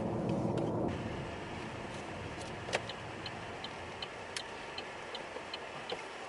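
Car cabin noise while driving: a steady hum of tyres and engine on the road. In the second half a light regular ticking comes in, about two or three ticks a second, with a couple of sharp clicks.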